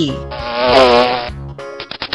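Honeybee buzzing: one droning buzz of about a second with a wavering pitch. Near the end, light music with quick plucked notes starts.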